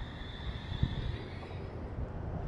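Low, uneven outdoor rumble of wind on the microphone, with a faint steady high tone over the first part and a soft thump a little under a second in.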